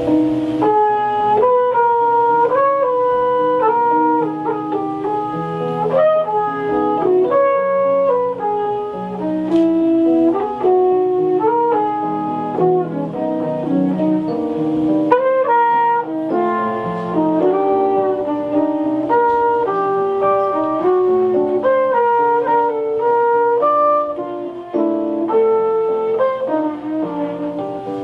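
Flugelhorn playing a slow jazz melody of held and moving notes over digital piano chords.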